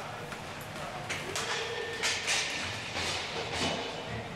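Inline hockey sticks and pucks clacking: a string of sharp knocks starting about a second in, echoing under the rink's dome, with players' voices among them.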